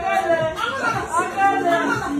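Several people's voices chattering over one another, with no clear words.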